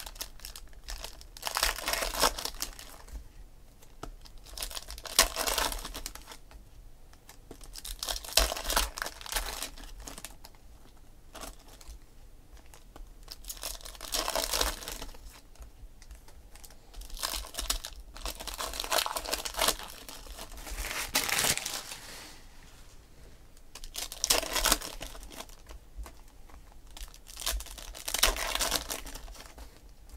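Foil trading-card pack wrappers crinkling and being torn open, with the cards inside slid and flipped through by hand. Irregular bursts of rustling come every second or two.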